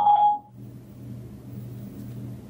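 A short steady tone, about half a second long, at the start. After it comes a low, steady background hum.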